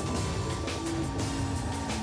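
Opening theme music of a TV crime series, a full mix with a steady beat and sustained tones.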